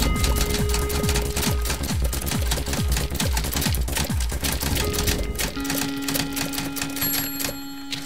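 Title-card music with a beat, overlaid with rapid typewriter keystroke clicks as the caption types itself out. The music eases down near the end.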